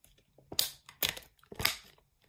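Clear plastic packaging crackling as it is handled, with three sharp crinkles about half a second apart.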